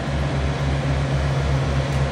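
A steady low mechanical drone from an idling engine, with a regular throb about four times a second and a constant hum above it.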